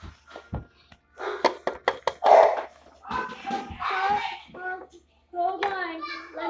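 Plastic toy figures being handled and set against a toy house: sharp clicks and knocks, the loudest about two seconds in. A child's voice makes wordless sounds in the middle and again near the end.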